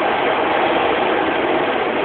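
Steady running noise of a Docklands Light Railway train, a continuous loud rumble with a low hum.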